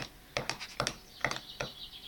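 A ceramic mug being handled: a quick series of light clicks and taps, about eight in under two seconds, with a faint high whine in the second half.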